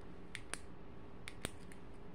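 Quiet room with four faint clicks in two pairs, a second or so apart: the small inline on/off switch on a lamp's power cord being pressed.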